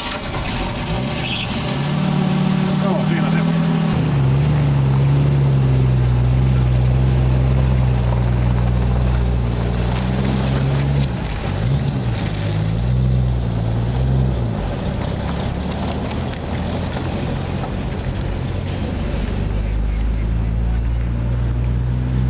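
Engine of an old SUV running on wood gas made by a trailer-mounted wood-chip gasifier, as the vehicle pulls away and drives past. A steady engine note sets in a few seconds in, wavers in pitch for a few seconds around the middle, then settles to a lower hum.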